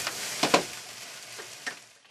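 Fried rice sizzling in a wok over a gas flame, with the ladle scraping and knocking against the pan a few times as it is stirred.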